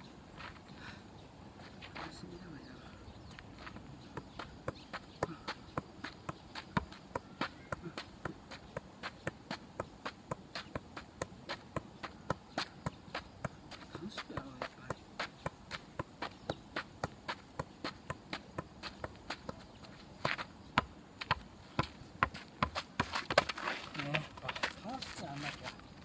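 A football being juggled by foot in freestyle practice: a steady run of short taps of the ball on the foot, about two to three a second, with a louder flurry of touches near the end.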